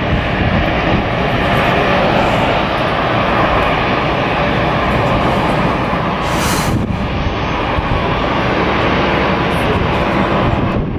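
Jet airliner engines running with a steady, even noise, and a short hiss about six and a half seconds in.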